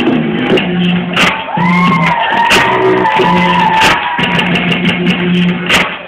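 Loud music played over a loudspeaker, with drum hits over a repeating low note; a tone slides up and down about two seconds in.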